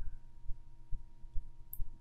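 Faint steady electrical hum with soft, low thumps recurring about twice a second.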